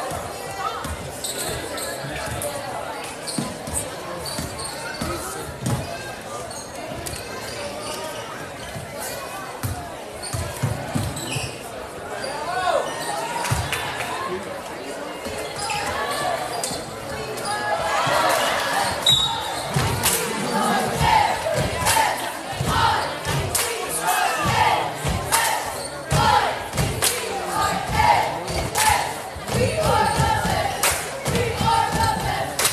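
Basketball game in a gym: a ball bouncing on the hardwood court amid crowd voices and shouts, which swell in the last third.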